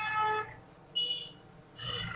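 The boot lid of a 2023 Hyundai Verna being unlatched and lifted open by hand. A short steady tone fades in the first half second, and the latch gives a brief sharp click about a second in.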